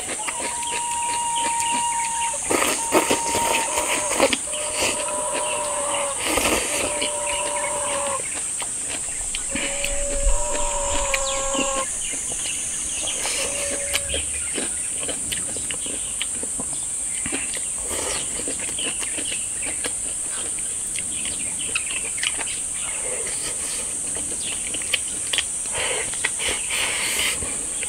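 A steady high insect drone runs throughout, over light eating sounds: chewing and soft clicks of chopsticks against a rice bowl. In the first half a series of long held notes alternates between two pitches, then stops.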